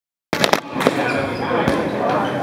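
Rubber dodgeballs bouncing on a wooden gym floor: three sharp bounces in quick succession just after the sound begins, then two more about a second apart, over the chatter of players.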